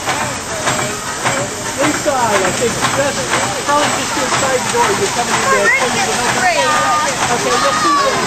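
Steady hiss of steam from a 1904 American Extra First Class steam fire engine as it vents white steam from its stack, with people talking over it.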